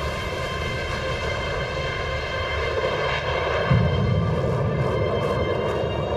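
Fighter jet engines roaring: a steady rushing noise with thin whining tones in it, swelling louder and deeper for about a second from just before four seconds in.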